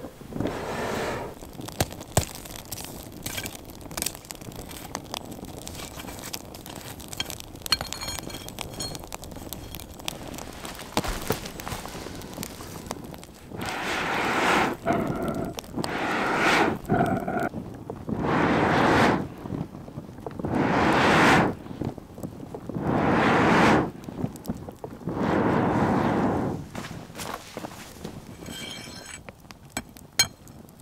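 Wood fire crackling and snapping in a pit forge. From about halfway through, a homemade bellows is pumped in a slow rhythm: about six loud whooshes of air, roughly every two and a half seconds, blowing the fire hotter to bring it up to forging heat.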